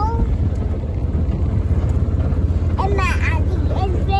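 Steady low rumble of a farm vehicle running, with wind on the microphone. Short voice-like calls that rise and fall come right at the start and again about three seconds in.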